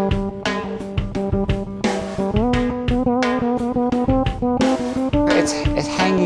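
Fretless electric bass playing a melodic line of sustained notes that slide smoothly from one pitch to the next, over a steady drum beat.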